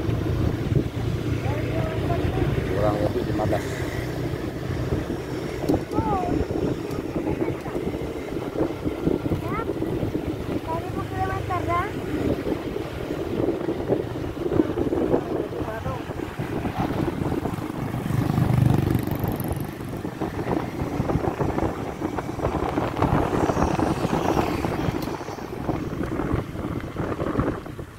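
An engine runs steadily, with wind buffeting the microphone.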